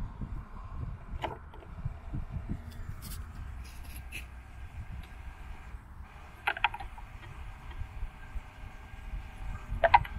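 Small battery-driven gear motor inside a wooden birdhouse geocache, powered by a 9-volt battery, running steadily with a faint whine as it winches the cache container on its line, with a few sharp clicks about a second in, around the middle and near the end. Low traffic rumble underneath.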